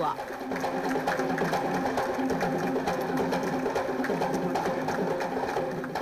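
Audience applauding, a dense, steady patter of many hands, with music playing under it.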